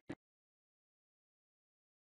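Dead silence: the program audio cuts out. Only a split-second fragment of the outgoing broadcast sound is heard at the very start.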